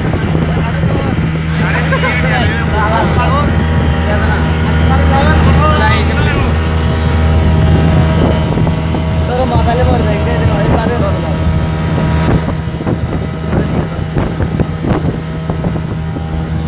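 Speedboat's outboard motor running steadily at speed, a constant low engine drone.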